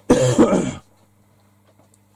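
A man clears his throat once, a short rasping burst under a second long, then quiet room tone with a faint steady hum.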